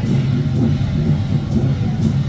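Temple-procession percussion music with a steady beat, over a continuous low rumble.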